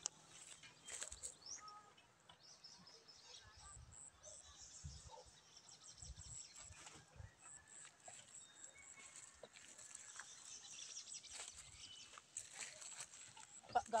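Quiet rural ambience: faint, scattered high chirps and distant animal calls, with a few soft low thumps.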